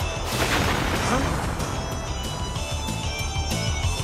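Driving rock background music with a steady beat, over a loud crashing sound effect about half a second in.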